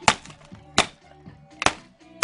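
Three sharp blows striking a broken computer monitor as it is smashed, each a hard crack, coming about three-quarters of a second apart.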